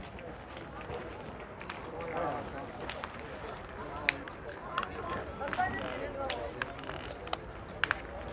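Indistinct background voices, with a few short sharp clicks: one about four seconds in and two close together near the end.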